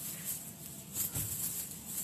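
Clothes being handled: faint rustling of fabric and a sequined jacket, with a soft low thump a little after a second in.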